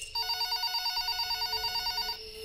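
Telephone ringing with an electronic warbling ring: two tones alternating rapidly, about ten times a second, for about two seconds before it cuts off.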